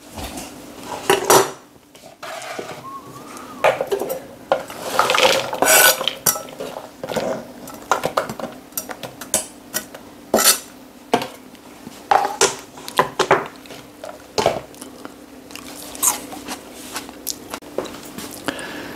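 Kitchen clatter of a chef's knife and a plastic chopping board as diced onion is scraped off the board into a plastic mixing bowl: a run of sharp knocks and taps, with a longer scrape about five seconds in.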